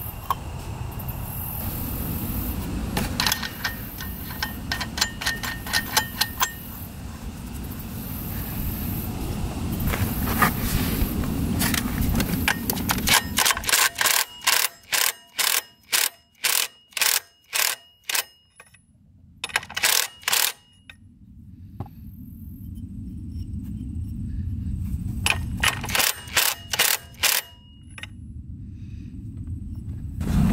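Cordless impact wrench running the centre nut of the Suzuki Eiger 400's primary drive clutch, in a long series of short bursts with brief pauses between them and a second shorter series near the end, as the clutch is tightened back on. Earlier, light metallic clinks of the clutch parts being handled.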